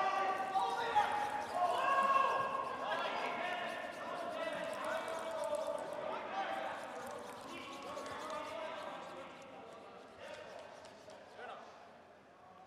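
Curling brooms scrubbing the ice in quick strokes ahead of a sliding curling stone, under long drawn-out shouts of sweeping calls. The sound fades steadily toward the end.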